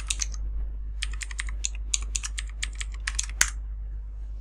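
Computer keyboard typing: a short run of keystrokes, a brief pause, then a longer quick run ending in one louder keystroke as the login is entered.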